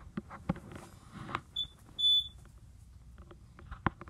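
Two high electronic beeps about a second and a half to two seconds in, a short one and then a longer one, over scattered light knocks and clicks of movement in a small room.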